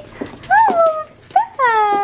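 A Pomeranian whining in three short, high cries, the last one falling in pitch and held, with a few light clicks of its claws on a hardwood floor.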